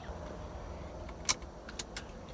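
Keys jangling in the ignition with a few sharp clicks, the loudest about a second and a quarter in and two fainter ones near the end.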